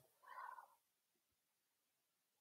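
Near silence: room tone, with one faint, brief sound about a third of a second in.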